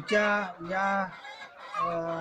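Kadaknath chickens calling: two drawn-out, level-pitched calls in the first second and another beginning near the end.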